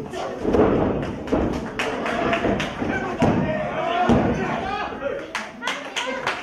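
Several thuds of wrestlers' bodies and kicks landing on the wrestling ring's mat, among shouting voices.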